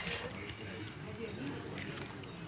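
Faint voices murmuring in the background, with a single light click about half a second in.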